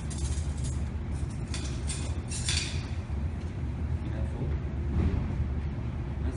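Metal cutlery clinking as table knives are laid on a table, in a few short clatters during the first three seconds, over a steady low rumble.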